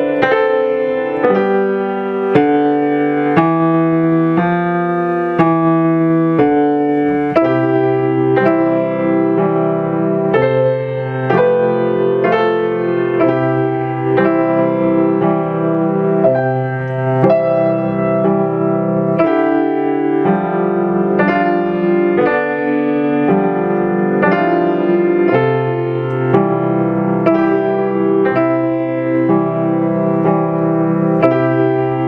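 Acoustic grand piano playing a slow, steady piece in broken chords. Both hands move across the keyboard and the sustain pedal is held down, so the notes ring into one another.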